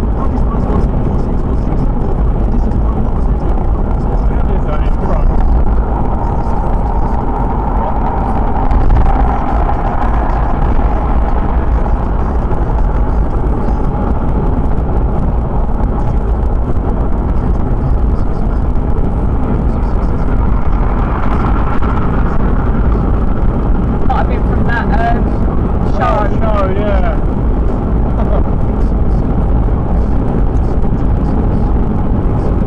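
Steady road noise inside a car moving at motorway speed: tyres on the tarmac, engine and wind.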